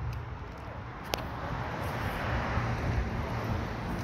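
Outdoor ambience: a steady low rumble and hiss, with one sharp click about a second in.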